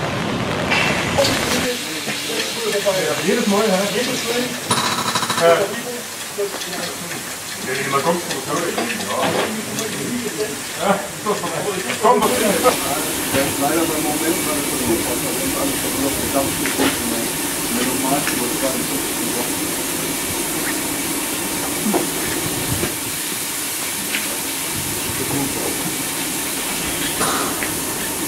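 People talking, then from about twelve seconds in a steady steam hiss from narrow-gauge steam locomotive 99 1741-0, standing in steam, with voices under it.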